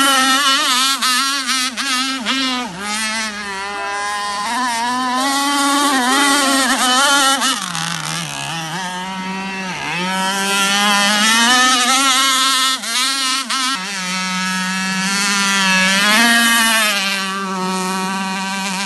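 Two-stroke chainsaw engine fitted in an RC powerboat, running at high revs with its pitch wavering as the throttle is worked. It drops off twice, about eight and ten seconds in, then climbs back to full speed.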